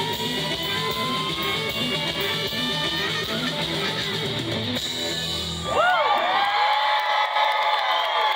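Live rock band with electric guitars playing the close of the song. The band cuts off about six seconds in and a crowd cheers and whoops.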